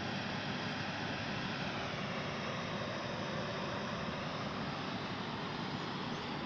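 Steady outdoor background noise recorded through a smartphone microphone: an even rumble and hiss with a faint hum, with no distinct events.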